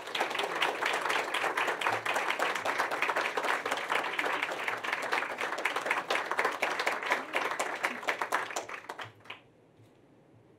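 Audience applause: many people clapping steadily, dying away about nine seconds in.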